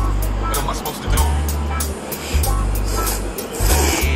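Background music with a steady drum beat and a heavy bass line.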